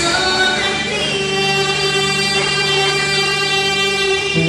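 A girl singing solo into a microphone, amplified through a hall's sound system, holding a long steady note from about a second in.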